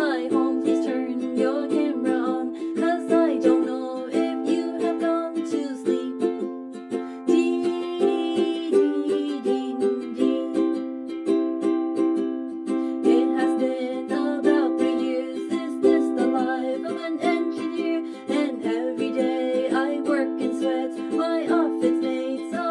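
Ukulele strummed steadily as accompaniment to a sung parody song, the voice carrying the melody over the chords.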